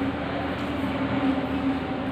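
A steady low hum over a background of even noise.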